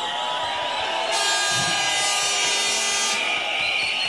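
Air horns blowing in long held blasts over crowd noise, several steady pitches at once, with a rush of hiss joining about a second in and dropping away near three seconds.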